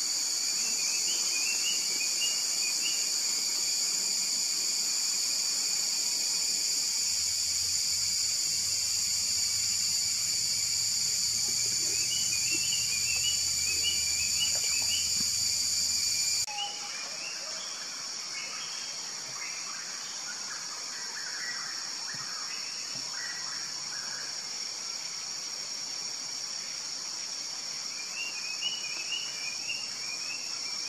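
Tropical forest ambience: a steady high-pitched insect drone, with short runs of bird chirps now and then. The drone drops in level about sixteen seconds in.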